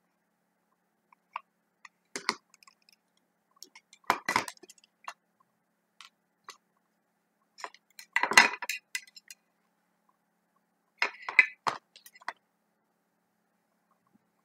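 Small hard clicks and clinks from handling the plastic case and parts of an analogue voltmeter, in four short clusters, the loudest about eight seconds in.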